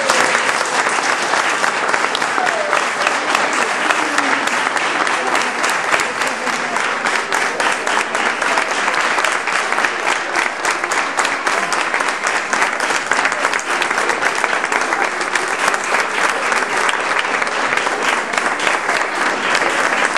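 Audience applauding steadily, a dense run of hand claps, with some voices mixed in.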